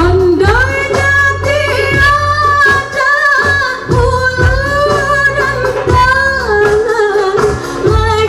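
A woman sings a qasidah (gambus-style Islamic song), holding long wavering notes, through a stage sound system. She is backed by keyboards and hand drums beating a steady rhythm.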